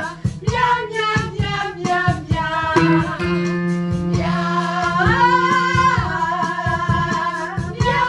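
A man's voice singing rhythmic vocal warm-up exercises in short, quick sung syllables, with a longer held note about five seconds in, over backing music with a steady beat.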